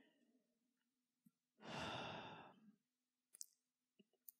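A single audible breath by the man speaking, lasting about a second, in a near-silent pause in his speech. A faint click follows near the end.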